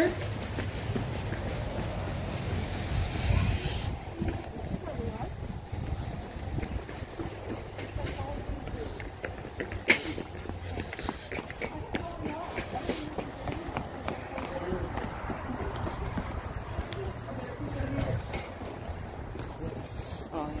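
Indistinct voices of people talking outdoors over a steady low rumble, with one sharp click about ten seconds in.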